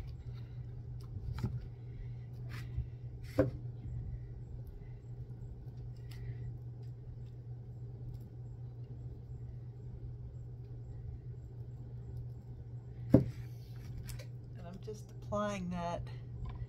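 Scattered light clicks and knocks of a metal spoon against a tin can of thick craft paste as it is stirred and spread, over a steady low hum. One louder knock comes about 13 seconds in, and a voice is heard briefly near the end.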